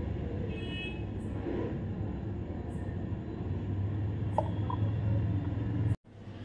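Steady low rumble of distant road traffic, with a brief high tone about half a second in and a few faint clicks.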